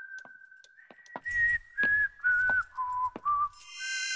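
Someone whistling a slow tune: one long held note, then five short notes stepping down in pitch and rising a little at the end. A soft low thud comes under each of the later notes, and light clicks are scattered throughout.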